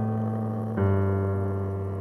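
Low piano notes sounded one at a time in a descending line. A new, lower note is struck about three-quarters of a second in and left to ring and slowly fade.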